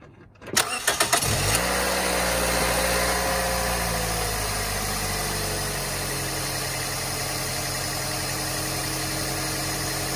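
2005 Scion xB's 1.5-litre four-cylinder engine briefly cranking and catching about a second in, then idling steadily, its fast idle easing down slightly over the next few seconds. It is the first start after an oil change, run to circulate the fresh oil.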